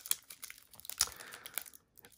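Foil wrapper of a trading card pack being torn and peeled open by hand: soft crinkling with scattered small crackles, strongest about a second in.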